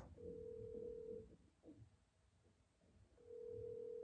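Ringback tone of an outgoing phone call heard through the phone's speaker: a steady tone lasting about a second, then about two seconds of silence, then the tone again. The call is ringing and has not yet been answered.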